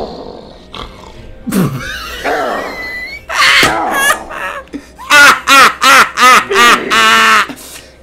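A man's loud, strained grunts and cries as he forces out heavy reps on a weight machine. They end in a quick run of six short, hoarse yells about a third of a second apart, with a pig-like, boar-like quality.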